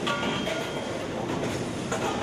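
Rotor aluminium die-casting machine running: a steady dense mechanical din with light clicks and knocks scattered through it.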